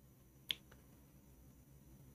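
A single sharp click of a computer mouse button about half a second in, followed by a much fainter click, over near silence.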